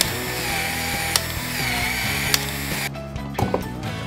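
Cordless PEX expansion tool running as its head expands the end of a PEX pipe, with two sharp clicks about a second apart; the motor stops about three seconds in.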